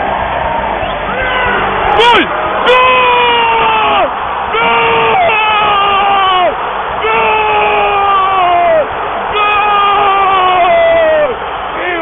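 A man shouting a run of long drawn-out cries in celebration of a goal, each held a second or more and dropping in pitch at the end, over a stadium crowd cheering. Two sharp knocks about two seconds in.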